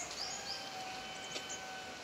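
Outdoor ambience with a few short, high bird chirps. A steady, even tone with a whistle-like quality is held for about a second and a half, over a faint background hiss.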